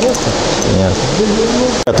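Indistinct talk over a steady hiss of workshop background noise. It cuts off sharply near the end, where a man starts speaking.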